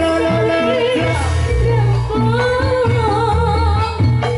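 Javanese gamelan music for a jathilan dance: a woman's voice sings a wavering, ornamented melody over sustained pitched instrument notes and a heavy low part, played loud and without a break.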